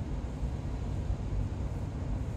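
Automatic car wash spraying the car, heard from inside the cabin as a steady, muffled rumble and hiss.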